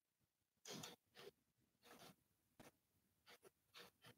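Near silence, broken by about six faint, brief scrapes and clicks as the servo-tool fixture and its bolts are handled and loosened on the AODE/4R70W transmission case.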